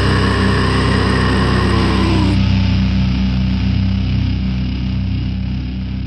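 Heavy metal band recording at the close of a song: a held guitar and bass chord ringing out and slowly fading, its upper ring dropping away about two seconds in while the low notes sustain.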